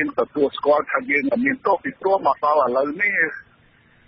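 Speech only: a voice reading a radio news report in Khmer, in short phrases with a brief pause near the end.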